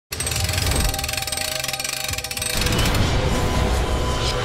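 Bank-vault door sound effect: rapid ratcheting clicks of the locking mechanism for about two and a half seconds, then a heavy low rumble as the door turns, with music underneath.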